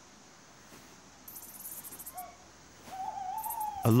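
An owl hooting: a faint short hoot, then a single longer, slightly wavering hoot of about a second near the end. The hoots sit over quiet night ambience with a brief high hiss.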